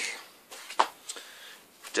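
Handling noise from records being swapped: a soft rustle with one sharp tap or click a little under a second in.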